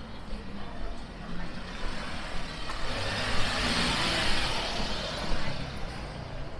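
City street traffic, with a vehicle passing close: its tyre and engine noise swells from about two and a half seconds in and fades again near the end.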